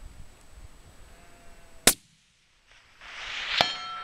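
A single sharp .308 rifle shot about two seconds in, the loudest sound. Near the end comes a second sharp metallic click, followed by a brief ringing tone.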